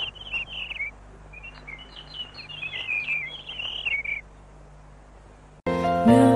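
Small birds chirping in a string of quick, high calls that stop about four seconds in. Near the end, music starts abruptly and is louder than the birds.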